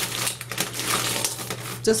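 Plastic pump tops and bottle caps rattling and clicking against each other and a stainless steel bowl as gloved hands move them around, a busy crackling handling sound.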